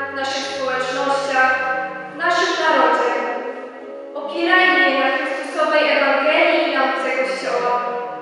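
A young woman's voice through a microphone, delivered in phrases over held accompanying notes that step from one pitch to the next.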